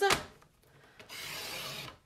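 Paper trimmer's cutting head sliding along its track and cutting through cardstock: a steady scraping that starts about a second in and lasts just under a second.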